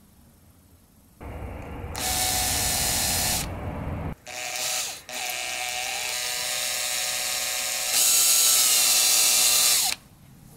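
Electric drill running as it bores a hole through the end of a thin wooden ruler. It starts about a second in, stops briefly twice around the middle, runs louder near the end, and its pitch drops as it shuts off.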